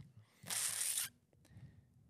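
A short hiss of noise lasting about half a second, then a faint click, in a near-silent pause.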